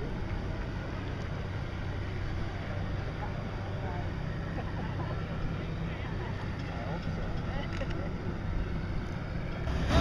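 A steady, low engine drone with faint, distant voices over it. The sound gets suddenly louder near the end.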